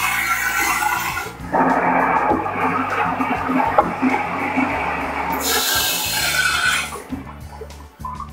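Water rushing through a tank water heater as supply water is forced into the bottom of the tank to stir up sediment and drain out through the open full-port drain valve. The rush changes in tone about a second and a half in and again near the end. Background music plays underneath.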